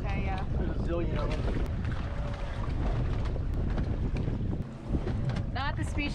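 Wind buffeting the microphone on a small boat at sea, a heavy steady rumble, with short bursts of talk in the first second and just before the end and a single knock about five seconds in.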